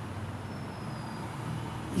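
Steady low background noise with a faint hum, no distinct events.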